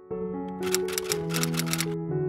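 Electric piano intro music with held notes changing pitch. Over it comes a quick run of about nine sharp clicks, starting about half a second in and stopping just before the end.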